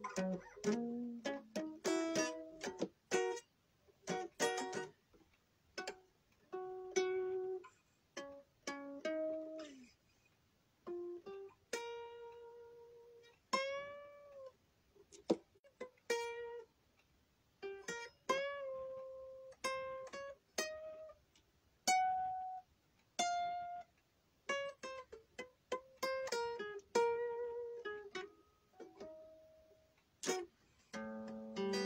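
Guitar played solo: single plucked notes and short runs, with several notes bent in pitch, in unhurried phrases broken by short pauses.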